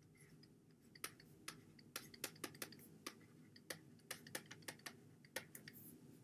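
Faint, irregular clicks of a stylus tapping on a pen tablet as a word is handwritten, starting about a second in, over a low steady room hum.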